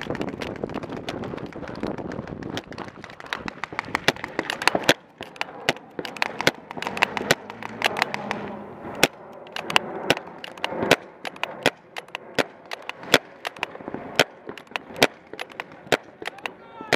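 Paintball markers firing across the field: a fast, irregular stream of sharp pops, several a second. The shots come thickest over the first five seconds and thin out after that.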